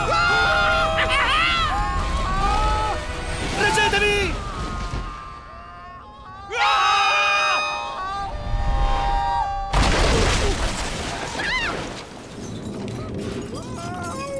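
Animated film soundtrack: cartoon characters screaming in long bursts over the film's music, with shattering-glass effects. A sudden loud burst of crash-like noise comes about ten seconds in.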